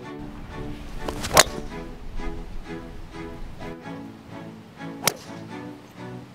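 Background music, broken twice by the sharp crack of a driver striking a golf ball: a louder one about a second and a half in, and another about five seconds in.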